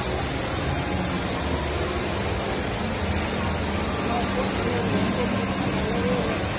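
Steady rush of the Rain Vortex, a tall indoor waterfall pouring from an opening in a glass dome into its basin, with a murmur of crowd voices underneath.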